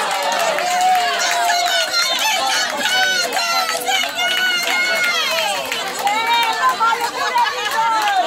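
Several people's voices talking and calling over one another at once, with no single voice standing out.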